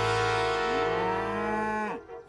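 A long, drawn-out cartoon animal bellow, like a moose or cow call, slowly rising in pitch over a held musical note, then cut off just before the two seconds end.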